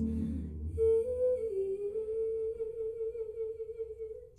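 A band chord dies away, then a single voice holds one long note, stepping up and back down in pitch near its start before settling.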